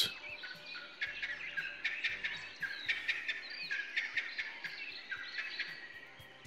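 Wild birds chirping and calling over one another, many short calls at different pitches, with faint music beneath.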